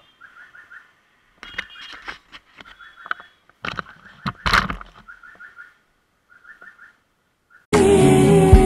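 Small birds chirping in quick groups of three or four short notes, repeated every second or so, with scattered knocks and clatter that peak in a sharp clatter about four and a half seconds in. Loud background music cuts in just before the end.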